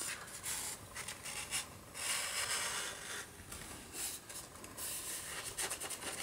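Cardstock panels rubbing and sliding against each other as they are handled, folded and positioned: a soft, irregular rustling in several short stretches.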